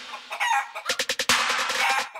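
A rooster crowing, preceded by a few short clucks.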